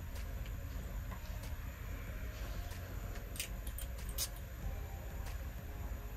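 Quiet room tone with a few faint, sharp clicks as a glass perfume bottle and its cap are handled.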